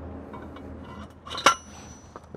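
Metal post-driver adapter sliding down into a four-inch metal fence post, with a few light scrapes and then a single sharp metal clink as it seats, about one and a half seconds in, ringing briefly.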